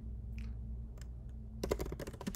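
Typing on a computer keyboard: a few scattered keystrokes, then a quick run of keys about a second and a half in.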